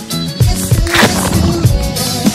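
Background music with a regular beat, and a short noisy crash about halfway through.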